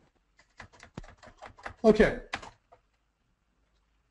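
Computer keyboard keys pressed in a quick run of about ten taps over a second or so, as the code editor jumps to another part of the file, followed by a single further click.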